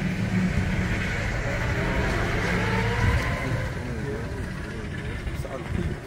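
A car's engine running close by, a low rumble that eases off about halfway through, with faint voices underneath.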